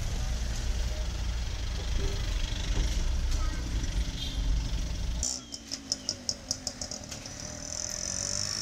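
Low steady rumble of a car driving, heard from inside the cabin. About five seconds in it gives way to quick, short scratchy strokes, about five a second, of a broom sweeping the street.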